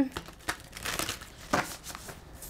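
Deck of tarot cards being handled, a string of irregular soft clicks and rustles.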